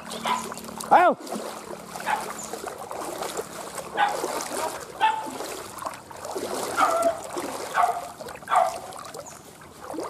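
Dogs barking and yelping in short separate calls, several over a few seconds, with water splashing.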